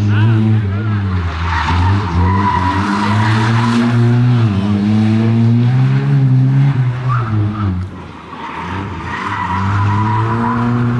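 Opel Corsa rally car driven flat out through tight tarmac corners: the engine revs rise and fall, and the tyres squeal through the turns. There is squeal from about a second and a half in to about halfway, and again near the end. The sound dips briefly about eight seconds in.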